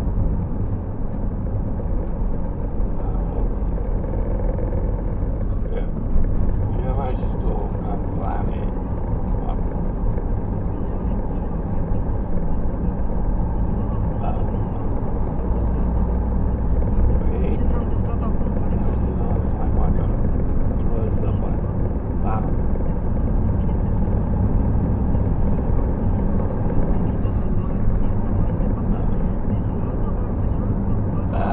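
Car engine and tyre noise heard from inside the cabin while driving at a steady speed: a steady low rumble.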